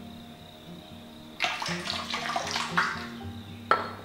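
Slices of ginger dropped into water in an iron wok around a slab of pork belly, splashing for about a second and a half, with one sharper plop near the end. Soft background music underneath.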